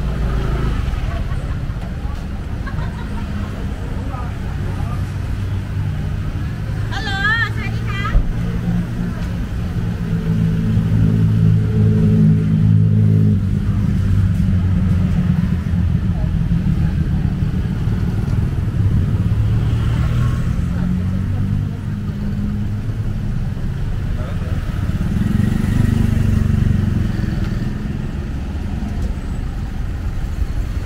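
Road traffic on a busy town street: car and motorbike engines running close by, swelling as vehicles pass. A brief wavering high-pitched tone sounds about seven seconds in, followed by a sharp click.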